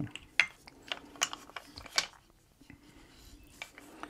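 Light wooden clicks and taps as the parts of a hand-made wooden toy vehicle and its wooden screw are handled and set down. There are several sharp taps in the first two seconds, then quieter handling with a few faint ticks.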